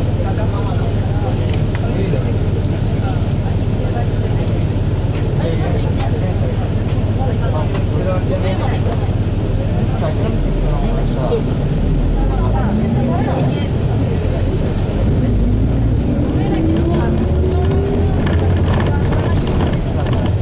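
The Nissan Diesel FE6E six-cylinder diesel of a KC-RM bus idling, heard inside the cabin, while the bus waits. Then the engine note rises twice, a short rise about twelve seconds in and a longer one from about fifteen seconds, as the bus pulls away and gathers speed.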